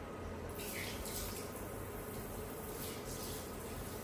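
Handheld salon shower sprayer running water over a person's hair into a shampoo basin: a steady rush of water that grows brighter for moments about a second in and again after three seconds.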